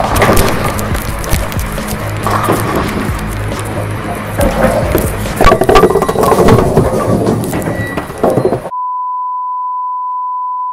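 Background music with a jumble of knocks and clatter, loudest a little past the middle. About 8.7 s in it cuts off suddenly to a steady 1 kHz test-tone beep, the tone that goes with TV colour bars.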